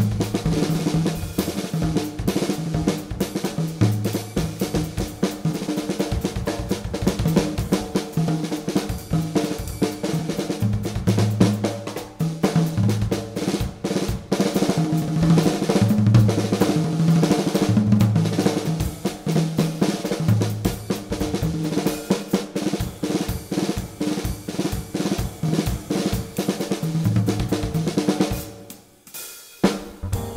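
Jazz drum kit solo: busy bebop-tempo snare, bass drum, tom and hi-hat figures with cymbals. It breaks off briefly near the end.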